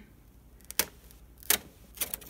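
Paper and a metal tear ruler being handled as the sheet is pressed down for tearing, giving two sharp clicks under a second apart.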